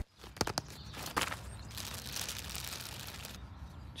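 Clear plastic zip pouch holding goalkeeper gloves being opened: a few clicks and crinkles, then about a second and a half of steady rasping that stops abruptly.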